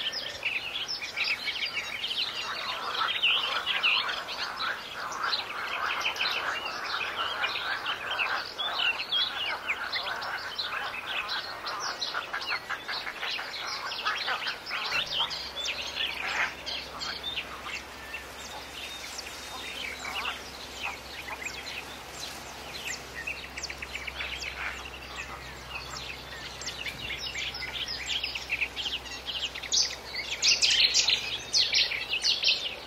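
Many birds chirping in a dense, continuous chorus. A faint steady low hum joins about halfway through.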